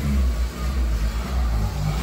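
A car running, with a steady low engine and road rumble.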